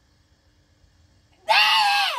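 A girl's kiai during the karate kata Enpi: a loud, high-pitched shout that breaks in suddenly about one and a half seconds in and is held to the end.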